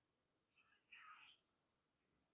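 Near silence: room tone, with a faint breathy, whisper-like sound lasting under a second, starting about a second in.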